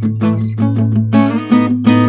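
Samick GD-101 steel-string acoustic guitar played with a nylon pick: quick picked single notes over a low bass note that rings on underneath. About a second in, the playing turns to fuller, brighter strummed chords.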